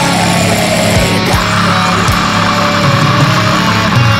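Black metal recording: dense, loud distorted guitars holding sustained low notes, with occasional drum hits.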